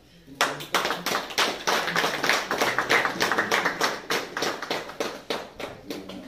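A few people applauding with hand claps. The clapping starts about half a second in and stops just before the end.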